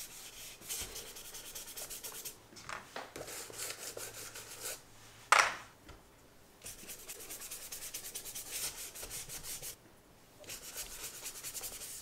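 Paintbrush scrubbing back and forth over sketchbook paper in quick, scratchy strokes, working wet colour into scribbled marks. The strokes come in runs with short pauses, and there is a single sharp tap about five seconds in.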